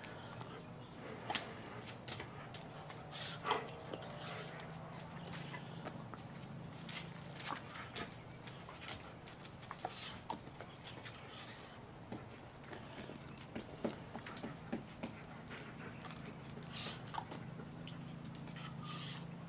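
A dog moving about on a tiled floor: scattered light clicks and taps at irregular intervals, over a faint steady low hum.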